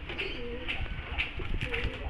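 Homing pigeons cooing in their loft: low, wavering coos, one near the start and another near the end, with a few faint clicks between them.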